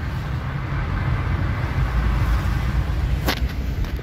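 Steady road-vehicle noise: a low rumble of traffic and tyres with no distinct engine note, swelling slightly midway. A single sharp click a little after three seconds in.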